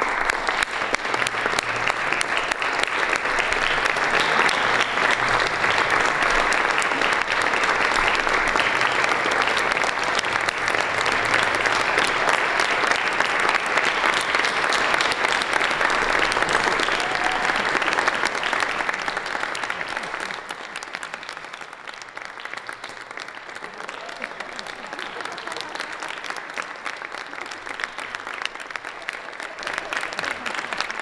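Theatre audience applauding a curtain call: full, steady clapping for about twenty seconds, then thinning to lighter applause.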